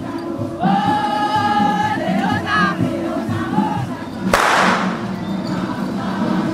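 A carnival mas group's voices chanting together in unison over steady drumming, with one sharp crash about four seconds in that fades quickly.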